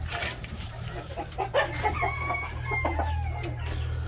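Chickens clucking and a rooster crowing, in short scattered calls through the middle. Plastic sheeting rustles briefly at the start.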